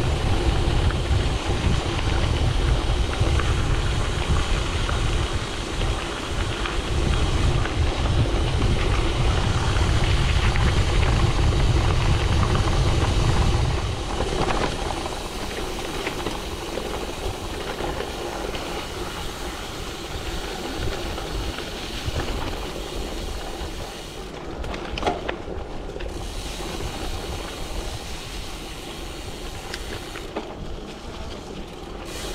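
Ride noise from a gravel bike on a forest trail: wind rumbling on the camera microphone over the hiss of tyres rolling on the track. The wind rumble drops away about halfway through, leaving the quieter tyre noise on dirt and leaves.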